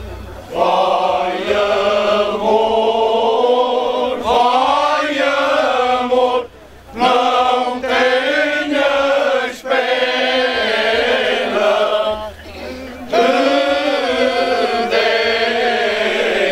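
Male choir singing cante alentejano, the traditional unaccompanied part-song of the Alentejo, in long slow phrases with slight wavering on the held notes. The full choir comes in about half a second in, with short breaks for breath about six and twelve seconds in.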